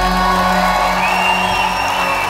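A live Celtic trad band, with concertina, fiddle, flute or uilleann pipes, bouzouki and bodhrán, holds the final chord at the end of a set while the crowd cheers and whoops. One rising whoop from the crowd comes about halfway through.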